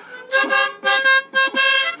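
Harmonica being played: a few short blown chords in quick succession.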